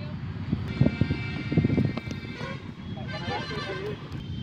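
Indistinct voices of people talking at a distance from the microphone. Behind them a steady high tone runs from about one second in to a little past two seconds.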